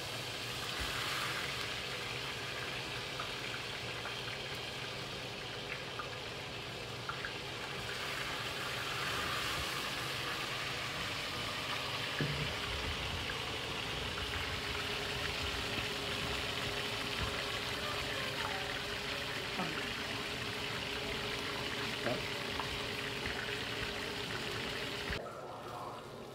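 Kingfish steaks shallow-frying in hot oil in a frying pan: a steady sizzle that holds at an even level and cuts off abruptly just before the end.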